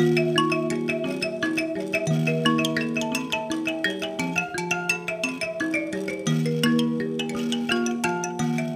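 Two mbira (Zimbabwean thumb pianos) played together: quick plucked metal keys ringing in an interlocking, repeating pattern of notes.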